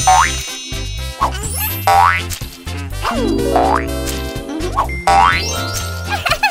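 Cartoon magic sound effects: four quick rising springy glides, about one and a half seconds apart, as the wand transforms the toys. Underneath runs children's background music with a bouncing bass line.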